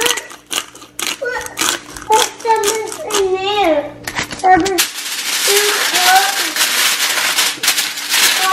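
Children's voices chattering and sing-song in the background for the first five seconds, then aluminium foil crinkling steadily as it is folded around food.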